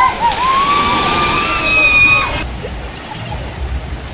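Giant tipping bucket on a water-park play structure dumping its load in a heavy cascade of pouring water, with long shouts from people underneath. About two and a half seconds in it cuts off abruptly to quieter running and splashing water.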